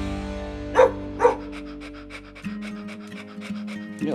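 Dog sound effects over the end of a theme tune: two short, loud dog barks about a second in, then quick rhythmic dog panting while the music fades on a held note.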